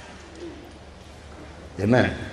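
A pause in a man's speech filled with faint room hum from a hall recording, then a short voiced syllable from him near the end.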